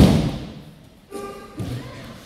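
A body landing on tatami mats in a breakfall from an aikido throw: a loud thud right at the start that fades out in the hall's echo. About a second in comes a brief voice, then a softer thud.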